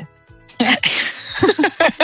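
A woman laughing: a breathy, hissing burst of laughter about half a second in, running into voiced laughter near the end.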